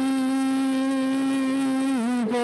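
A man singing a worship song, holding one long steady note.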